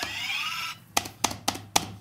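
A short rising electronic sound effect, then a quick, uneven run of about five sharp clicks: quiz answer buttons being pressed on the desk.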